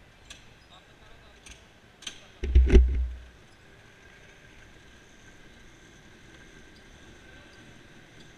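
Electric go-karts running with a faint steady high whine, and a loud muffled thump and rumble about two and a half seconds in, with a few light clicks before it.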